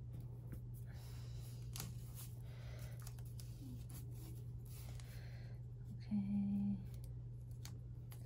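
Faint rustling and light taps of hands handling planner paper and pressing washi tape down along the page edge, over a steady low background hum. About six seconds in, a short hummed note breaks in.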